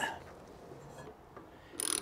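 Quiet scraping of a metal drain plug being threaded by hand into an RV water heater's tank fitting, then a brief, high-pitched metallic scrape near the end as the socket wrench is picked up.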